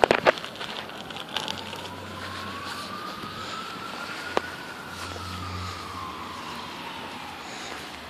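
A distant siren: one slow wail rising in pitch for about three and a half seconds, then falling again, over steady outdoor background noise. A few clicks sound at the start and one sharp tick midway.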